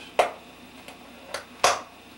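A few sharp clicks and snaps as the speed-loader pouch on a police duty belt is handled, the loudest near the end.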